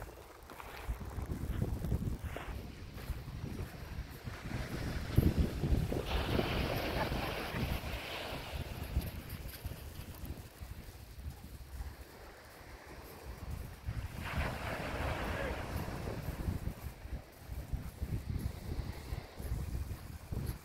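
Wind buffeting the microphone, with small waves washing on the shore; the noise swells louder twice, about a third of the way in and again past the middle.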